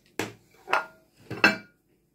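Ceramic dishes knocked and set down on a countertop: three sharp clinks with a short ring after each, the last the loudest.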